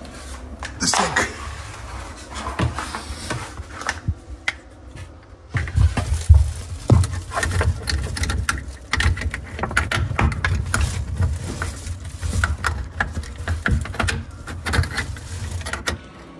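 Clicking, knocking and scraping from a red plastic sink-and-faucet wrench being worked under a bathroom vanity, on the faucet's underside fittings among braided supply hoses, to tighten a faucet handle that spins all the way around. Frequent irregular bumps and rubbing close to the microphone, heaviest from about five seconds in.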